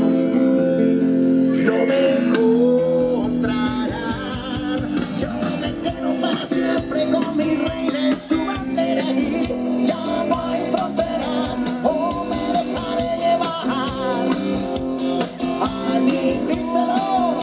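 A live cover band playing a rock song through a PA, with electric bass, drums and a singing voice.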